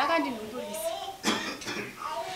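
A person speaking, with a cough about a second and a quarter in.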